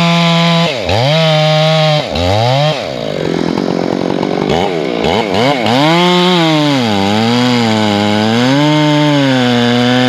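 Ported Stihl 461 chainsaw with a 28-inch bar, bucking tamarack (western larch) logs. It runs at a steady high pitch at first. Twice it drops sharply and comes back up, sags to a lower, rougher note in the middle, then speeds up again, its pitch rising and falling over and over.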